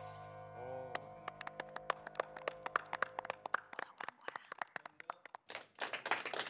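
A held music chord fades out, then scattered hand claps from a few people begin about a second in. The claps grow into fuller applause near the end.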